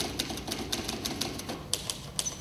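Manual typewriter keys clacking in an uneven run, about five or six strikes a second.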